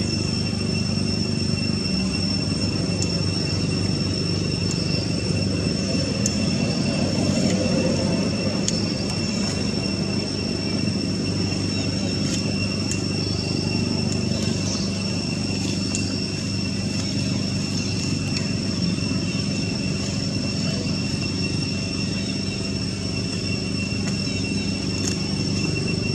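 Steady outdoor background noise: a low rumble with a constant high-pitched whine running under it, and no distinct animal calls.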